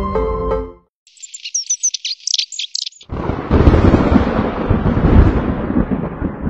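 A short music jingle ends, then high bird chirps for about two seconds, then a loud, long rumble of thunder with a rain-like wash that runs to the end.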